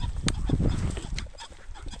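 Rooster pheasant cackling as it flushes: a few short, sharp calls.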